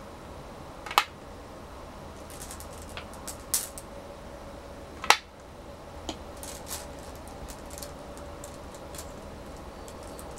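Go stones being set down on a wooden go board, with two sharp clacks about a second in and about five seconds in and a softer one between. Lighter clicks of stones are heard in between, over a steady faint room hum.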